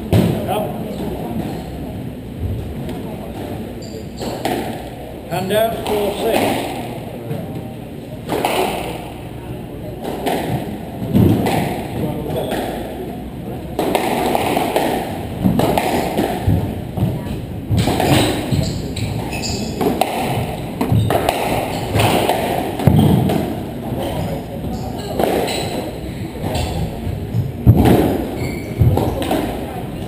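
Squash rally in a hall: irregular sharp thuds of the ball struck by rackets and hitting the walls, several seconds apart, over a murmur of voices.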